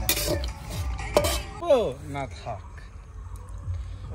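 Metal spatula scraping and clinking against an aluminium kadai while stirring ingredients, strongest in the first half second and again about a second in. A short stretch of voice follows, then it goes quieter.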